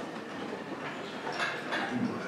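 Handheld microphone being passed between people, its body rubbing and knocking in their hands, heard as a steady rumbling, rustling noise with a few faint knocks.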